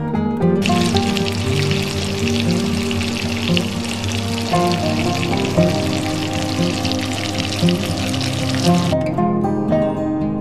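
Breaded cutlets sizzling as they fry in hot oil in a frying pan. The sizzle starts about half a second in and cuts off suddenly near the end, over acoustic guitar background music.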